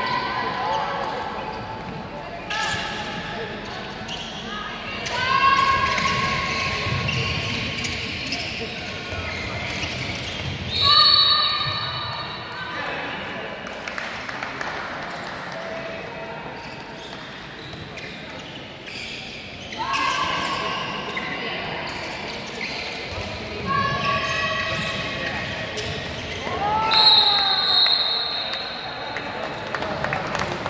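Handball bouncing on a wooden sports-hall floor during play, with players' high-pitched shouts and calls ringing out in the large hall; the loudest shouts come about five, eleven and twenty-seven seconds in.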